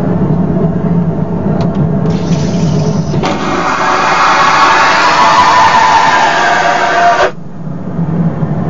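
Toilet flushing: water rushing through the bowl, growing louder about three seconds in, then cutting off suddenly about seven seconds in to a quieter rush.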